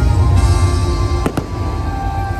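Fireworks bursting with a deep booming rumble over a holiday music soundtrack, with two sharp cracks close together a little past a second in.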